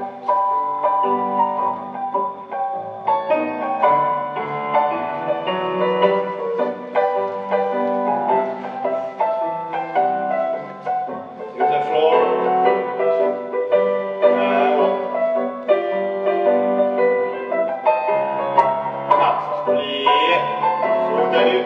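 Piano playing a steady, classical-style accompaniment for a ballet barre exercise, with sustained chords under a moving melody.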